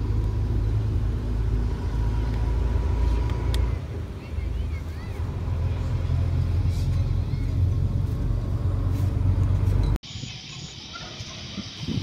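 Steady low rumble of wind buffeting the microphone over open water, with a few faint chirps. About ten seconds in the sound cuts abruptly to a much quieter background with a steady high-pitched insect drone.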